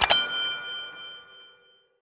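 A bright electronic chime struck twice in quick succession, its several tones ringing on and dying away over about a second and a half: the closing sting of an outro jingle.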